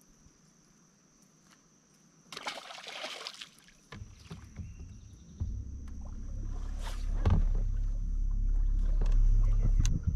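Water and wind noise around a boat on a lake. A brief splashy rush comes a little over two seconds in, then a low rumble builds and stays loud to the end.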